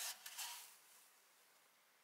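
Faint rustling of white fibre damping wadding brushed by a hand inside a subwoofer cabinet, over about the first second, then near silence.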